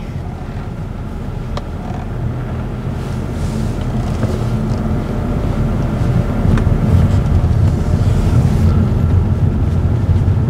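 A moving vehicle's steady low engine hum and road noise, growing gradually louder, with a couple of faint clicks.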